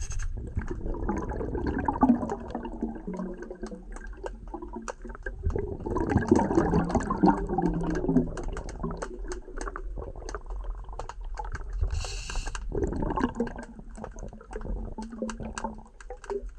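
Muffled underwater gurgling and swishing of water heard through a submerged camera, surging about a second in, again from about six to nine seconds, and around thirteen seconds, over a steady scatter of small clicks. A short hiss sounds about twelve seconds in.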